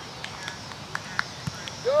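Outdoor playing-field ambience: faint distant children's shouts and a few soft knocks, one lower knock about a second and a half in. A man's voice starts calling at the very end.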